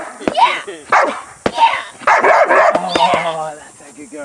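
Protection-trained dog barking repeatedly from a car window at a decoy approaching the car, about six loud barks in quick succession.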